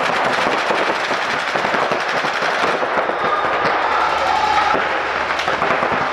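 Paintball markers firing in rapid, continuous streams, many shots a second, from several players at once, with no break.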